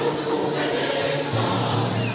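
A church choir singing in many voices, accompanied by large hand drums.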